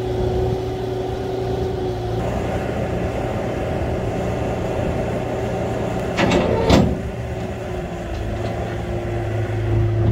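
Bobcat T300 compact track loader's diesel engine running steadily while it works a grapple to pick up loose hay. A short rattle of knocks about six and a half seconds in is the loudest moment.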